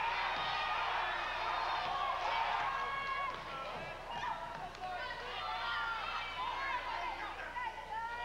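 Gymnasium crowd during a basketball game: many spectators' voices chattering and calling out at once, a steady din.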